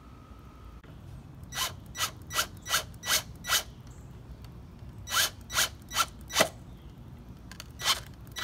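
Cordless drill driving a screw through a flexible shaft extension, pulsed in short bursts about two or three a second: a run of six, a pause, a run of four, then one more at the end.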